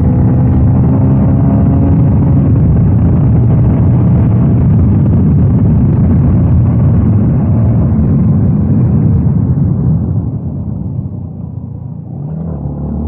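Yamaha Y16ZR's 155 cc single-cylinder engine and wind rushing over an on-board camera microphone while the motorcycle is ridden at speed, a steady loud rumble. About ten seconds in it gets quieter as the bike eases off.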